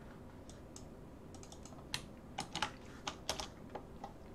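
Computer keyboard being typed on: about a dozen quiet, irregularly spaced keystrokes.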